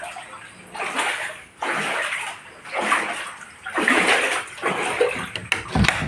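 Water splashing and sloshing in repeated bursts, about one a second, with a short thump near the end.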